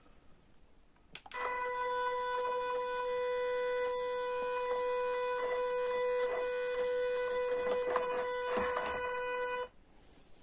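MN168 RC crawler's electric motor and drivetrain running at a slow crawl under light throttle, a steady whine at one pitch with faint ticking. It starts about a second in and cuts off just before the end.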